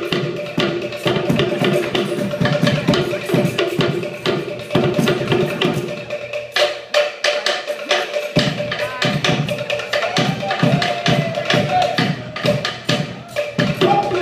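Fast Polynesian drum-dance rhythm: rapid wooden slit-drum strikes over a deeper drum. The deep drum drops out for about two seconds past the middle, then comes back.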